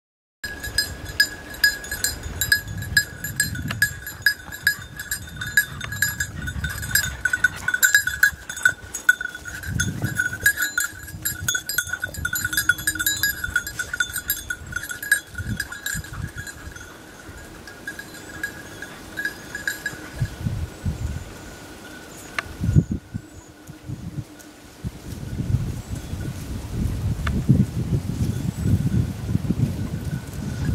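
Hunting dog's bell jingling steadily for most of the clip, fading to a faint ring for the last several seconds, over bursts of low rustling in dry vegetation that grow loudest near the end.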